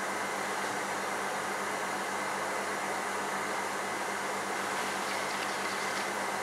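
Steady hiss with a faint low hum: an aquarium air pump running and driving air through a sponge filter.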